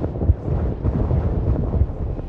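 A deep, irregular rumble like buffeting wind, laid in as the sound of the command module's main parachutes deploying during descent.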